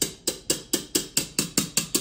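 A stand mixer's wire whisk attachment tapped quickly and repeatedly against the rim of a stainless steel mixing bowl, about five knocks a second, each with a short metallic ring, knocking stiff meringue batter off the whisk and back into the bowl.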